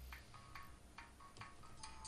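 Faint, irregular computer mouse and keyboard clicks over a low steady hum, close to silence.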